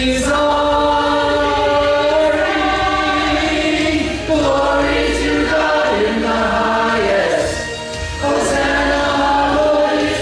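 Mixed church choir singing a Christmas cantata in long held phrases, with brief breaks between phrases about four and eight seconds in.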